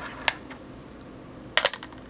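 Light clicks of small hard pieces being handled while depotting an eyeshadow: tweezers, the metal eyeshadow pan and its black plastic case knocking against a metal palette lid. There is one click soon after the start, then a louder double click near the end.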